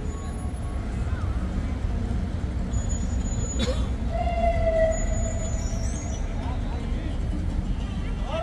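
Busy city street at night: a steady low rumble of road traffic with passers-by talking. There is a sharp click about halfway through and a brief steady tone just after it.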